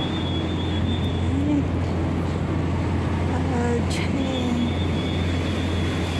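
City street ambience: a steady low traffic rumble under an even hiss of noise, with a thin high tone that drops out for a few seconds in the middle.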